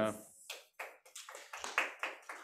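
A few scattered hand claps from a small audience, about half a dozen sharp, uneven claps in under two seconds.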